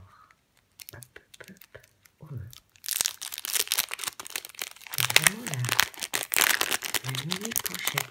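Small plastic zip-lock bags of diamond-painting rhinestones crinkling and rustling as they are handled, with a few light clicks at first, then loud and continuous from about three seconds in.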